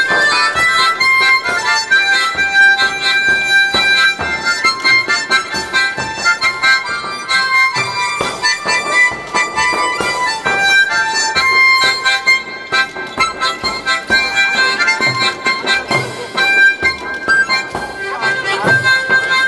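Harmonica played into a microphone through a PA, a held-note melody over a backing track with a light beat.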